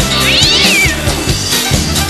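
Background rock music with a steady beat, and over it one meow that rises and then falls in pitch about half a second in.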